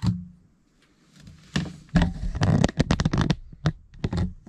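Handling noise: a single click, then about a second and a half in a dense run of clicks, rustles and clatter lasting nearly two seconds, as a clamp meter and its test leads are handled and set down.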